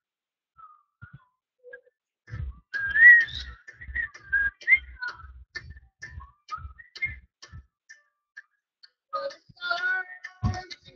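A whistled tune of short, high, gliding notes over a steady beat of low thumps, about three a second, starting a couple of seconds in and thinning out near the end.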